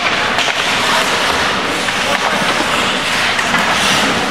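Ice hockey in play in an indoor rink: skate blades scraping and carving the ice under a steady, loud, echoing arena din.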